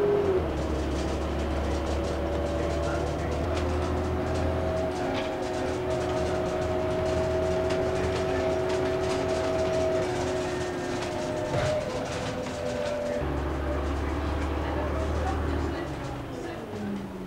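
A bus running along a road, heard from inside: a steady whine that drops in pitch just after the start, then climbs slowly, over a low engine hum that changes note a few times.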